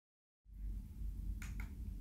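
A faint low hum of background noise that starts about half a second in, with two soft clicks close together near the end.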